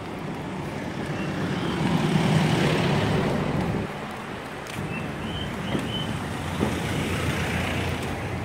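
A car driving past close by: engine and tyre noise swell to their loudest about two to three seconds in, then drop away, leaving a lower steady rumble.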